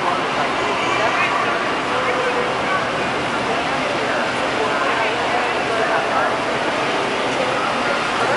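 Steady running noise of a parade-float chassis moving along the street, with people talking faintly underneath.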